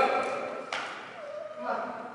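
People's voices calling out in short bursts, the loudest right at the start. Speech, with no other clear sound.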